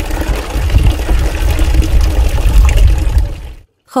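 Water running from the tap of a mobile water tanker into plastic bottles, a steady splashing rush that stops abruptly near the end.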